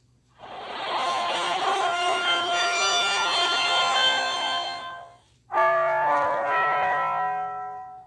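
Two short logo jingles in a row. The first is a full chord of many held notes that swells in about half a second in and fades out near five seconds. After a brief gap, a second jingle of distinct held notes comes in sharply and fades away near the end.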